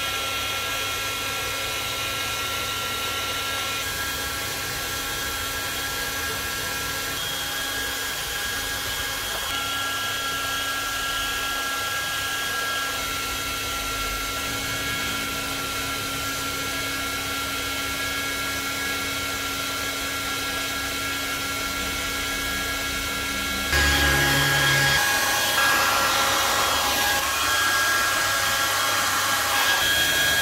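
A hair dryer running steadily, a blowing hiss with a steady motor whine, becoming louder about three-quarters of the way through.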